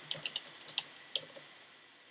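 Computer keyboard keys tapped in quick succession, about ten light clicks over a second and a half, then stopping: the Down arrow key pressed repeatedly with Shift-Alt held to duplicate a layer.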